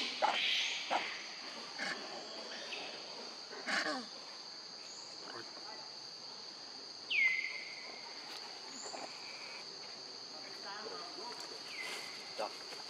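Steady high-pitched drone of forest insects, with a few short calls and noises over it, the loudest a sharp falling call about seven seconds in.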